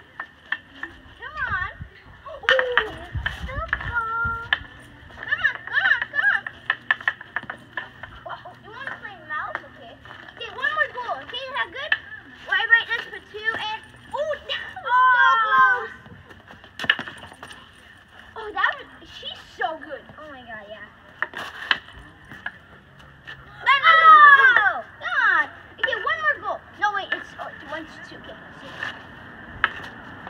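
Street hockey on asphalt: high, wavering vocal sounds come and go, loudest about halfway through and again near the 24-second mark, with a few sharp clacks of hockey sticks on the pavement and ball.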